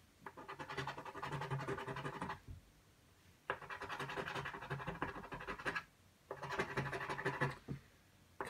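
A coin scraping the scratch-off coating from a paper lottery ticket on a table, in three bursts of rapid scratching, each about two seconds long, with short pauses between them.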